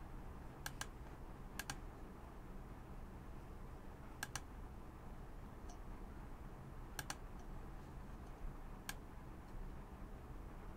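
Faint clicking at a computer while photo-editing sliders are adjusted: five isolated clicks, most of them quick double clicks, spaced one to three seconds apart, over a faint steady low hum.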